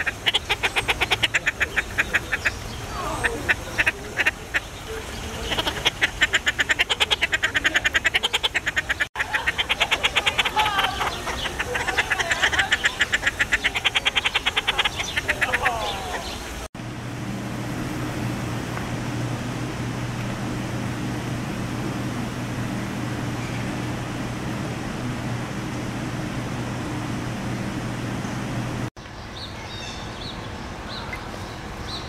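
Inca terns calling: fast, rattling trains of pulses in bursts of a few seconds each, repeated many times. About 17 seconds in, they give way to a steady low mechanical hum.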